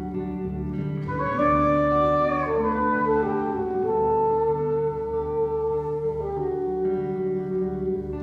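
Jazz trio of saxophone, double bass and guitar playing, the saxophone holding long notes over the bass and guitar.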